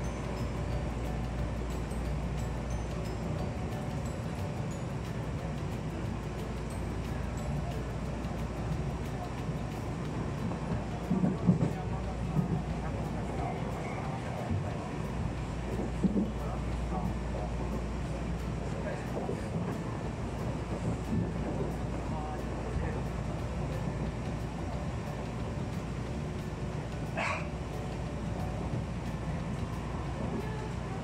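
Tobu Tojo Line commuter train running at speed, heard from inside the carriage: a steady low rumble, with a few short louder knocks in the middle and a brief high-pitched squeak near the end.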